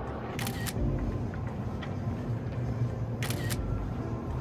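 Two camera shutter clicks, each a quick double snap, about three seconds apart, over steady background music.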